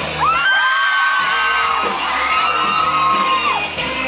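Rock band playing live in a hall. A high note slides up near the start and is held for about three seconds before dropping away, while the low bass and drums thin out briefly in the first second.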